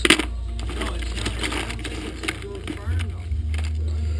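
Loose metal car keys jingling and clinking together as a hand rummages through a bucket full of them, with a sharp clink right at the start and scattered small clicks after.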